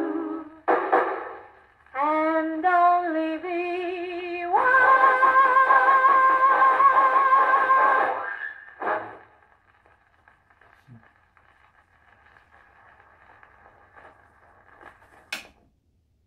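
Acoustic horn gramophone playing a 78 rpm record: a female vocal trio sings the song's closing phrase in close harmony, holding the last chord for about four seconds before a short final chord. After that only the record's faint surface hiss is left, and a single sharp click comes near the end.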